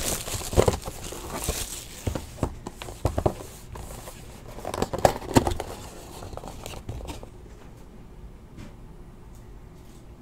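Plastic shrink wrap on a trading-card box being cut with a razor blade and pulled away: crinkling and tearing with scattered sharp clicks, dying down after about seven seconds.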